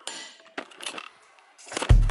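A few light knocks and rustles as a camera is handled and moved about on a table top, then background music with a heavy drum beat starts loudly near the end.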